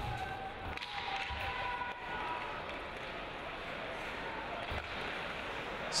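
Steady crowd noise in an ice hockey arena, with a few faint held tones in the first two seconds.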